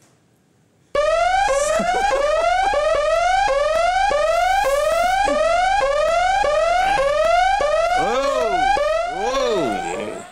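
Electronic siren-like sound effect that starts suddenly about a second in: a rising tone repeated about twice a second, turning into a few rising-and-falling swoops near the end.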